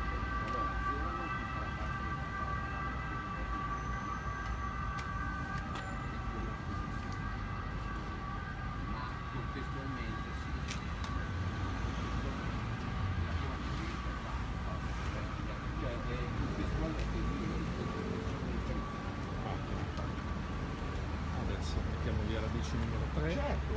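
Street traffic rumbling, with a steady high tone of several pitches over it that fades away about halfway through.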